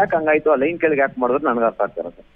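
Only speech: a man talking over a telephone line, his voice thin and phone-quality.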